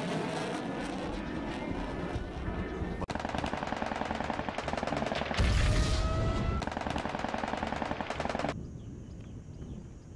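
Battle sound of rapid machine-gun fire, with a heavy explosion-like boom about five and a half seconds in. The gunfire cuts off suddenly about a second and a half before the end, leaving it much quieter.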